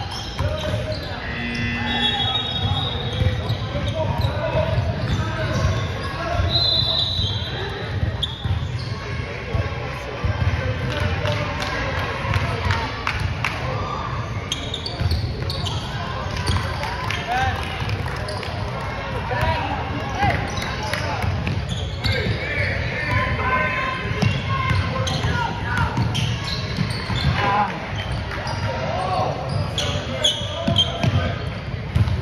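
Basketball bouncing on a hardwood gym floor, with scattered sharp knocks throughout. Voices of players and spectators overlap and echo around a large hall.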